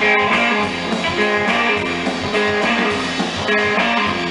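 Live rockabilly band playing: strummed electric guitar over upright double bass and a drum kit, steady and loud.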